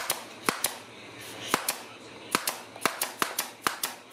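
Handheld nail gun firing a dozen or so sharp shots, one after another, driving nails through the metal ferrules of whitewash brushes into their wooden handles. The shots come irregularly, closer together in the second half.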